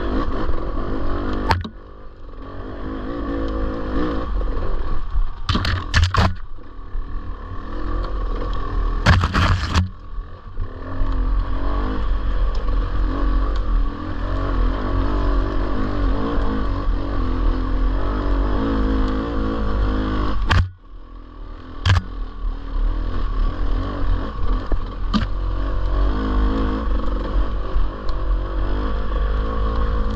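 Dirt bike engine running over rough singletrack, its pitch wavering with throttle changes and dropping off sharply twice as the throttle is closed. Several sharp knocks and scrapes punctuate the engine.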